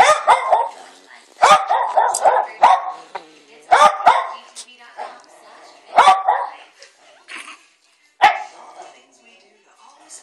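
Dog barking in short loud bursts about every two seconds, one of them a quick run of several barks in a row.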